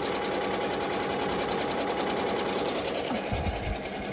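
Ricoma EM-1010 ten-needle commercial embroidery machine stitching at speed: a fast, steady rattle of needle strokes. A brief low thud comes a little past three seconds in.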